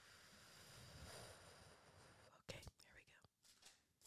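Faint whispering of a quiet, murmured prayer, breathy and without full voice. A single sharp click about halfway through, followed by a few fainter ticks.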